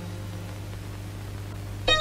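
Soundtrack room tone: a steady low hum. Near the end a background music cue starts with a run of bright, clear notes.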